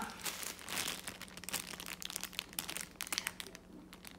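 Clear plastic bag around a paint-by-number kit crinkling as it is handled, in irregular rustles that thin out near the end.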